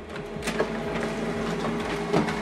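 HP Color LaserJet Pro 4302dw laser printer running a double-sided print job: a steady mechanical hum that comes up just after the start, with faint ticks of the paper feed.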